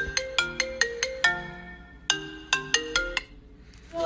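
Mobile phone ringtone: a fast run of short, bright notes that ring and die away, a brief pause, then the same run again, ending about three seconds in. It is an incoming-call ring.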